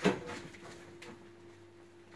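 Handling noise from a hand-held phone camera: a brief knock and rustle right at the start, then a faint steady hum.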